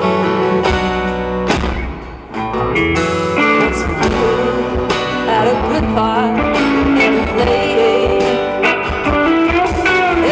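Live band playing an instrumental passage of a slow rock ballad, led by strummed acoustic guitar with electric guitar and bass, with a brief drop in loudness about two seconds in.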